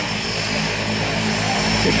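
Propeller airplane engine running, a steady low drone with no change in pitch.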